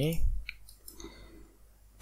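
A couple of faint computer mouse clicks, the first about half a second in.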